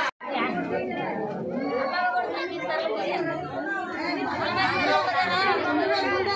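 Several women's voices talking over one another in lively chatter, with a brief cut to silence right at the start.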